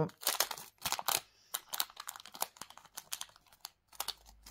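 Hands handling small jewellery-making materials at the work surface: irregular rustling and crinkling, densest in the first second or so, then scattered light clicks.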